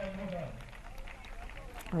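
A man's voice trailing off, then low background noise with faint distant voices, and a louder voice starting at the very end.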